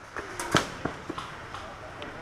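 A few short, sharp clicks, the loudest about half a second in, over faint distant voices.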